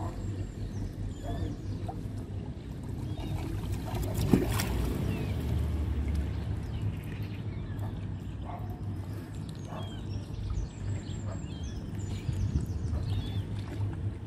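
Water lapping against a concrete bank over a steady low rumble, with the small pecks of Canada geese taking bread from a hand. One sharp click about four seconds in.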